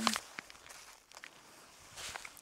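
Faint rustling with a few light clicks, the sound of small movements close to the microphone.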